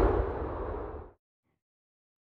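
Tail of a cinematic boom hit sound effect: a deep rumble dying away and fading out about a second in, leaving silence.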